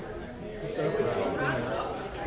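Several people chatting at once, their voices overlapping in a large room.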